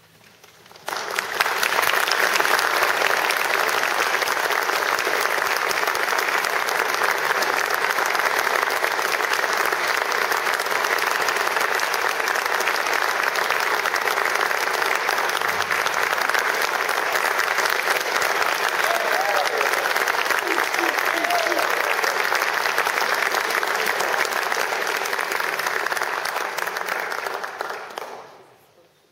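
Audience applauding: after a brief hush, steady clapping starts about a second in and fades away near the end.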